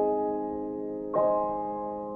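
Karaoke backing track playing slow, soft piano chords with no voice. A chord rings on from just before the start, and a new chord is struck about a second in, each fading slowly.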